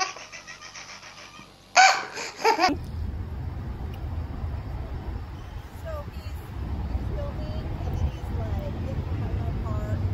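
A baby laughing hard in rapid pulsed bursts, the first laugh fading away and a second loud burst about two seconds in. After that only a steady low background rumble remains.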